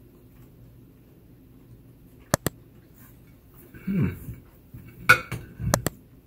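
A few sharp clicks over quiet room tone: two quick ones about two seconds in and a small cluster with soft thumps near the end, with a short hummed 'hmm' between them.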